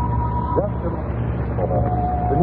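Steady low hum of an old radio broadcast recording, under a couple of brief held tones.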